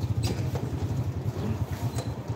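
Small motorcycle engine running with a fast, steady low putter as the bike rides up close.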